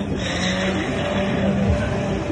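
A car engine running and revving at a burnout, over a steady music beat.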